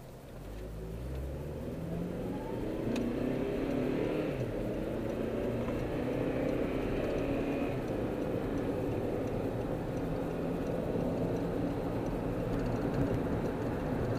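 Car engine heard from inside the cabin, rising in pitch as the car accelerates onto the freeway, then a steady drone of engine and road noise at cruising speed.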